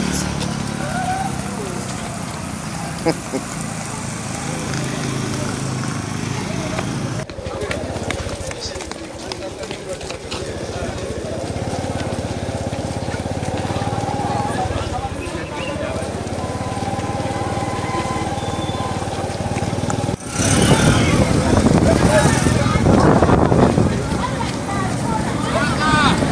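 Voices of people outdoors over road traffic noise, without clear words. Several cuts change the sound abruptly, and a louder stretch of many voices starts about twenty seconds in.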